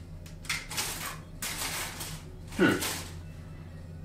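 Plastic model-kit runners and their wrapping being handled and shuffled, in several short rustling bursts.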